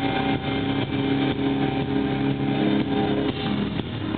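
Industrial metal band playing live: heavily distorted bass and guitar hold a sustained chord over drum hits, then the chord breaks off near the end.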